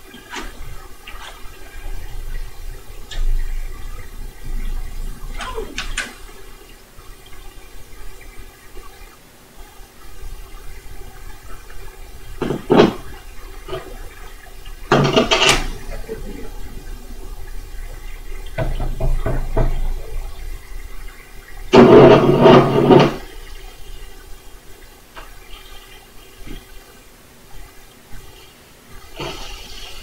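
Webcor Music Man portable reel-to-reel tape recorder being worked by hand, its motor giving a low rumble and a steady hum. Several loud bursts of noise and clicks come as the transport controls are switched between forward and rewind.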